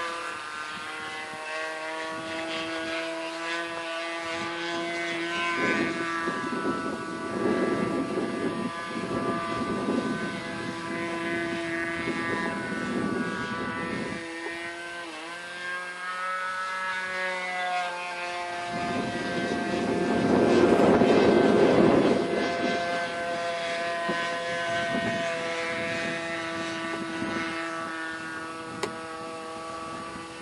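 Radio-controlled model biplane's 15 cc O.S. glow/gas engine and propeller running in flight, a steady pitched drone that drops in pitch and volume when throttled back about halfway through, then opens up again, loudest as the plane passes near about two-thirds of the way in.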